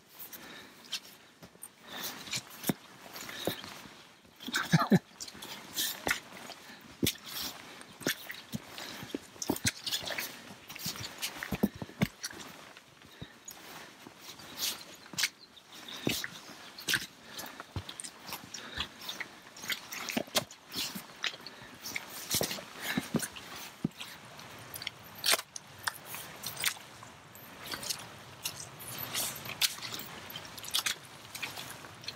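Footsteps of hikers in rubber gumboots on a muddy trail: an irregular run of squelches, clicks and knocks, with rustling of gear and vegetation.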